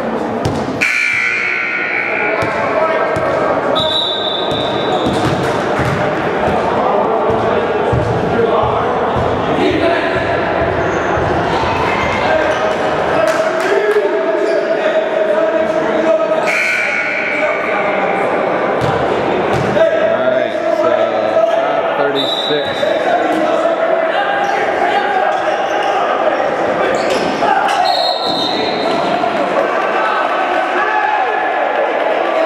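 A basketball bouncing on a gym's hardwood floor amid many voices talking and calling out, echoing in the hall. A few short high-pitched tones come through, each about a second long.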